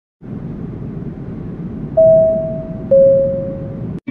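Intro sound effect: a steady low noisy hiss, joined by two clear electronic tones about a second apart, the second lower than the first, each sounding sharply and then fading.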